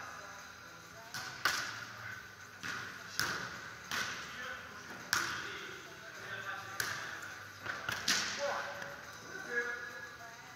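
A volleyball being struck again and again by hands and forearms in serve and serve-reception play, about nine sharp hits over ten seconds, each echoing in a large hall. Voices call out near the end.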